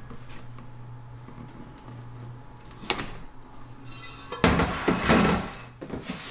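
A metal bundt pan handled on a tray: a light tap about three seconds in, then a louder clattering scrape, under a second long, as the pan is worked off the turned-out cake about four and a half seconds in.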